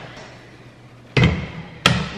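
Two thuds, one a little after a second in and a sharper one near the end, as household items are set down on a kitchen counter.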